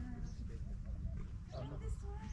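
Farm animals calling, with short rising and falling calls that are busiest near the end, over a steady low rumble.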